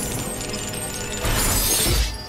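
Dramatic TV-drama score music under a shattering sound effect, which swells louder over the last second.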